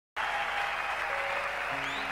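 Concert audience applauding over soft, sustained band notes, with lower notes joining in near the end.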